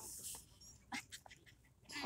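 Small leashed dogs sniffing in the grass: a few short, faint sniffs about a second in, with light rustling.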